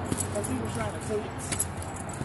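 Light clicking and jingling handling noise close to the microphone as the phone is carried, with a faint voice murmuring in the first second.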